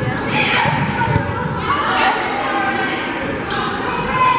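Volleyball rally in a gymnasium: a few sharp hits of the ball ring out amid players' calls and crowd voices, echoing in the large hall.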